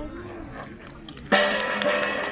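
Faint voices, then music cuts in abruptly about a second and a half in: loud held notes at several pitches with drum strikes.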